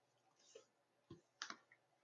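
Near silence: room tone with a few faint, short clicks, one around the middle and a pair soon after.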